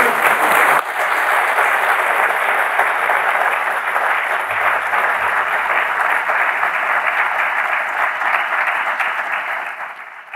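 A large audience applauding steadily, the clapping dying away near the end.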